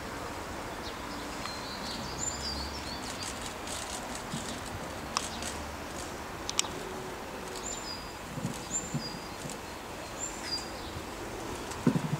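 Bird chirping short, high calls in small clusters every second or two over steady outdoor background noise, with two sharp clicks a little past the middle.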